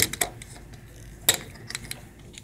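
Small hard objects clicking and clattering as they are handled and set into a plastic tackle box. There are a few sharp clicks, the loudest past halfway and a quick cluster near the end.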